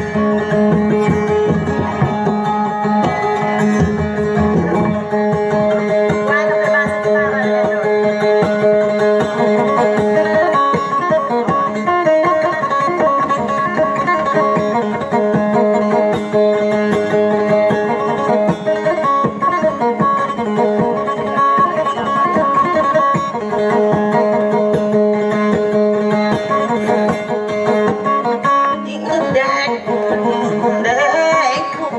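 Amplified plucked-string dayunday music: fast picked notes over sustained drone notes, the style played on the kutiyapi boat lute.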